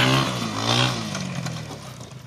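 Four-wheeler (ATV) engine coming off the throttle: its pitch glides down and the sound fades away over the two seconds.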